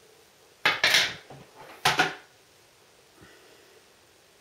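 Two short clattering handling noises about a second apart, as hairstyling tools (a plastic hair clip and the curling wand) are knocked and picked up.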